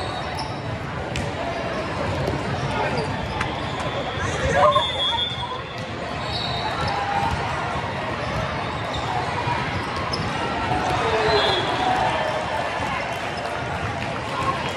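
Volleyball game sounds in a large hall: a continuous hubbub of crowd and player voices, with sharp smacks of the ball being played and short, high sneaker squeaks on the court. A louder shout comes about four and a half seconds in.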